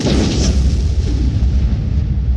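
Sound-designed logo-reveal impact: a sudden loud, deep boom that keeps rumbling, with a hiss on top that fades over the first second.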